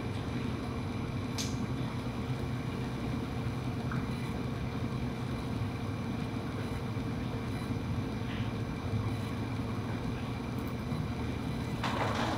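Steady low hum of room tone in a theatre hall, with a faint constant tone and a few faint small clicks.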